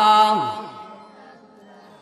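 A man chanting a devotional naat line unaccompanied through a microphone. He holds the end of the phrase, then his pitch slides down and trails off about half a second in, leaving a quiet pause before the next line.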